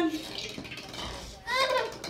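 Voices only: speech trailing off at the start, then a young child's short high-pitched vocal sound about one and a half seconds in.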